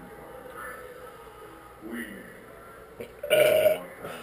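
A man burps once, loudly, a little over three seconds in, after drinking from carbonated drinks. A shorter, softer vocal sound comes about two seconds in.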